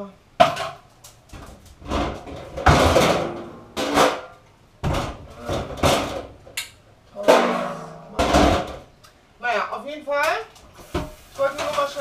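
Dry dog food being scooped and poured into a metal bowl: a series of rattling, clattering pours and knocks, with some wordless vocal sounds around ten seconds in.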